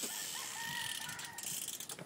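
A rooster crowing once, one held call of about a second and a half.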